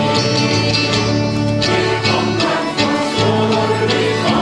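An accordion band with acoustic guitars playing a gospel hymn at a steady beat. The accordions hold chords under the tune, with voices singing along.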